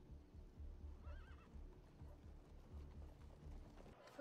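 Faint, low irregular rumble with a short quavering animal call about a second in.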